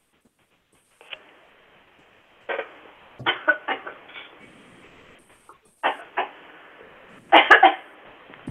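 A person coughing repeatedly in several short bouts, heard through a narrow telephone-quality call line.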